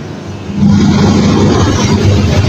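A motor running loudly: a rough low rumble with a steady low hum, starting about half a second in.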